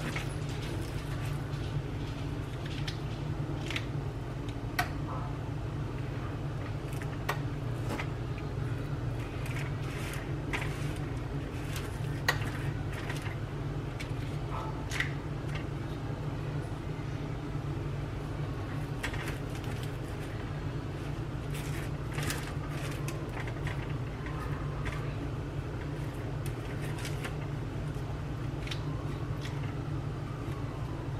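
A metal kitchen scoop scraping cooked acorn squash flesh from the shell and knocking it into a skillet: scattered short scrapes and clicks, the sharpest about five, twelve and fifteen seconds in, over a steady low hum.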